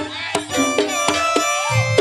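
Live Javanese campursari band music: a sustained melody line that bends and slides in pitch, over sharp, irregular kendang drum strokes.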